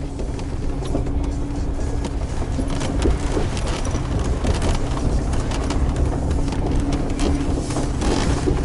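Cabin noise inside a Mercedes G500 driving on a rough off-road track: a steady low engine and drivetrain rumble with a constant hum, and frequent small knocks and rattles from the tyres and body on the stones.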